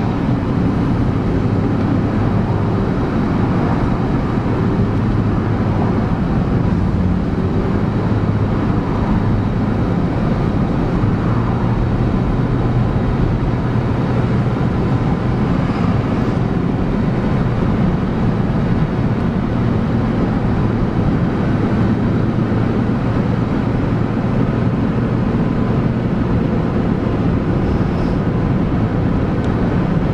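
Steady road noise and engine hum inside a moving car's cabin, a low, even rumble that does not change.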